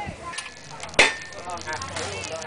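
A single sharp click about a second in, over faint background voices.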